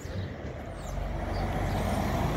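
A truck driving past, its low engine and road rumble growing steadily louder as it approaches.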